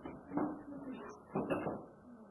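Indistinct women's voices in a small room, two short bursts of talk or laughter too unclear to make out, about half a second and a second and a half in.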